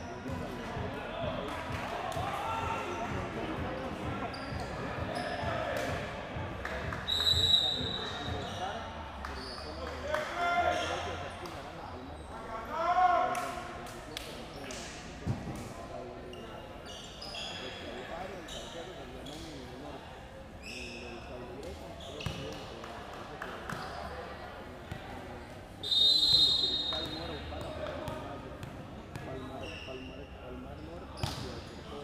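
Indoor volleyball match sounds: sharp hits of the ball and shoe squeaks, shouting from players and spectators, and a referee's whistle blown twice, about seven seconds in and again near the end.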